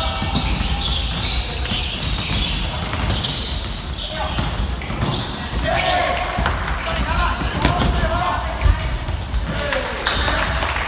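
Indoor basketball play on a wooden gym floor: the ball bouncing, sneakers squeaking and players calling out to one another, with one louder knock near the end.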